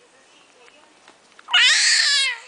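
A baby's high-pitched squeal, about a second long, starting past the middle and falling in pitch at its end.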